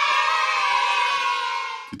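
Cartoon sound effect of a group of children cheering together: one long shout held by many voices, fading out near the end.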